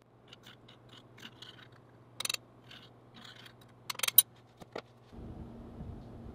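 Light scrapes and clicks of metal handling at a small electric melting pot of molten pewter, with two louder sharp scrapes about two and four seconds in, over a steady low hum. Near the end the hum gives way to a rougher low rumble.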